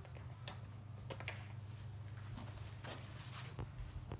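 Steady low hum of the air supply driving a homemade fluidized bed of powder-coat paint, with scattered faint ticks and clicks.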